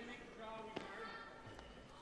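Quiet arena ambience with faint distant voices and a single sharp knock about three quarters of a second in.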